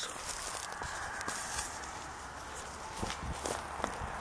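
Handling noise from a camera being passed from hand to hand, with a few soft footsteps on grass. It is a steady rustling hiss with faint scattered ticks, several of them in the last second.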